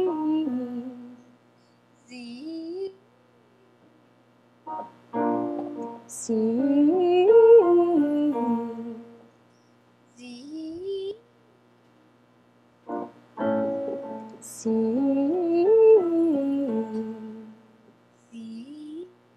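A piano chord is struck, then a female voice sings a warm-up vocalise that climbs stepwise and comes back down. This happens twice, with short, quieter rising vocal slides in between. It is a range exercise aimed at high head resonance.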